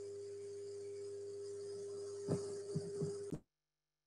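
Steady electrical hum with one steady tone from an open video-call microphone line, with a few short knocks late on. The sound then cuts off abruptly to dead silence, as if the line was muted or dropped.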